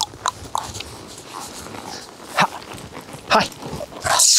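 A dog barks twice in the second half. Small clicks and knocks come near the start.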